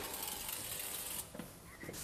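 Electric door opener buzzing: a sharp click, then a steady buzz that cuts off after about a second, as the building's entrance door is released from inside.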